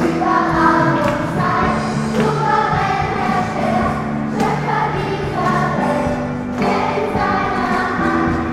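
A choir singing a gospel song in several parts, with long held notes.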